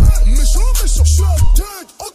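French hip-hop track: a male voice rapping over a beat with heavy sub-bass hits. The bass and beat drop away about a second and a half in, leaving the sound much quieter.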